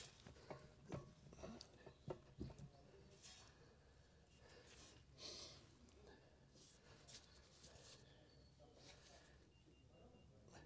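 Near silence, with a few faint taps in the first few seconds and a soft brief scrape about five seconds in, as a boat propeller is worked by hand onto its shaft.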